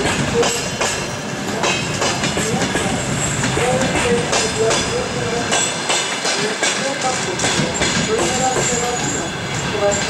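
Passenger carriages of a departing train rolling past at low speed, wheels clattering over rail joints, with a wavering squeal from the wheels on the rails.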